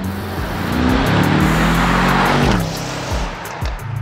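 A 2021 Mercedes-AMG E63 S's twin-turbo V8 accelerating hard past. The exhaust note climbs in pitch, rises to a rush of noise as the car passes about two and a half seconds in, then drops in pitch and fades away.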